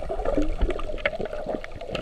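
Underwater sound picked up by a submerged camera: a low, muffled watery rumble with many scattered sharp clicks and crackles.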